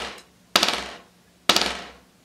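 Buzz strokes on a rubber drum practice pad laid over a snare drum: a wooden drumstick is pressed into the pad so it bounces many times quickly. Each stroke is a sharp hit followed by a fading buzz of about half a second. Two strokes, about a second apart, follow the dying tail of an earlier one.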